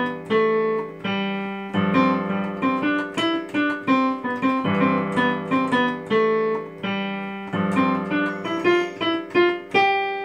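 Yamaha digital piano playing a short melodic phrase over sustained chords, a C chord with G in the bass and a G seventh chord. The phrase repeats about every three seconds, and the last chord dies away at the end.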